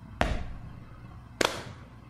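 Instrumental gap in the song's backing track: two sharp drum hits about a second apart, the first the louder, over a faint low backing.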